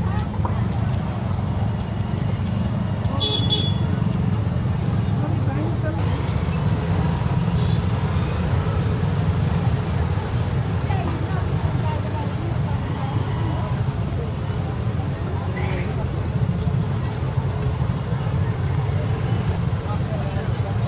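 Busy market street ambience: a steady low rumble of traffic under passersby's voices. About three seconds in there is a short, high-pitched toot, with a weaker one near the end.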